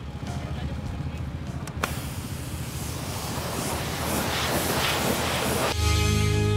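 High-pressure washer spraying: after a sharp click about two seconds in, a hiss of spray grows louder over a low steady rumble. Music with guitar cuts in just before the end.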